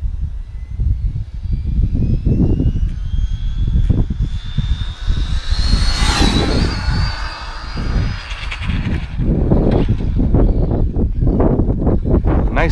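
Arrma Infraction V2 6S brushless RC car on a full-speed pass: the motor's whine climbs steadily in pitch as the car accelerates toward the microphone, peaks sharply as it shoots past about six seconds in, then holds high and fades away within a few seconds. A heavy low rumble of wind on the microphone runs underneath.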